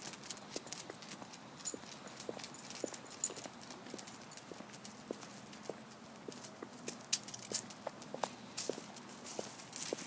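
An old dog's claws clicking on a concrete sidewalk as it walks, in irregular light clicks.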